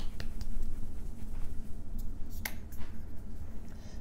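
Glass foundation bottle shaken by hand: quick clicking rattles that stop just after the start. A few sharp clicks follow about two to two and a half seconds in.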